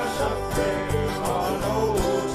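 An acoustic blues song with plucked acoustic guitar, played by a small band between sung lines.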